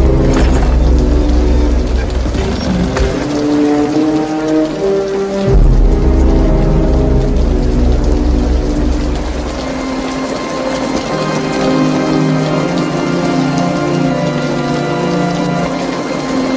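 Slow, sombre film score with long held notes, swelling twice with a deep low rumble, over a steady hiss of rain.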